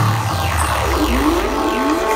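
Trance music played loud over a festival sound system in a breakdown: a run of rising synth sweeps over a held bass, with no kick drum.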